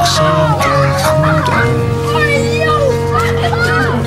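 Background music: a song with long held notes over a steady bass line.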